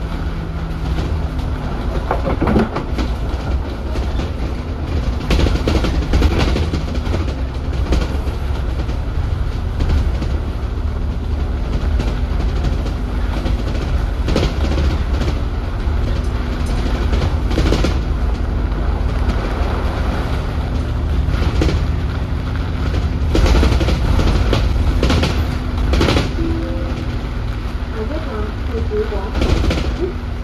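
Cabin ride noise of an Alexander Dennis Enviro400 double-decker bus under way: a steady low engine and road rumble with a faint steady whine, broken by knocks and rattles from the body as it runs over the road.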